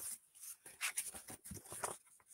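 Paper rustling as the page of a picture book is turned: a quick, irregular run of soft rustles and light taps.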